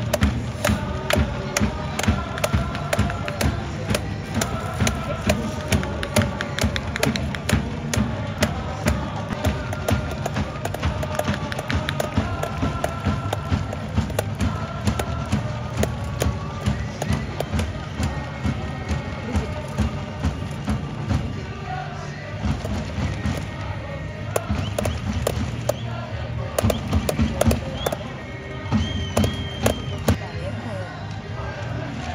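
Football supporters in the stands chanting together to a steady drum beat, the crowd noise carried over the stadium.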